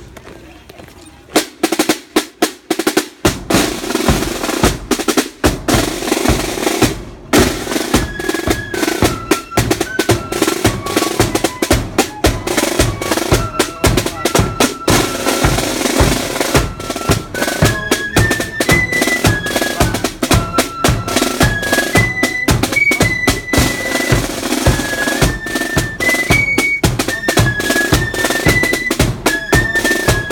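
Marching flute band: rope-tensioned side drums and a bass drum strike up a few seconds in with a steady beat, then after a brief break about seven seconds in the flutes come in with a melody over the drums.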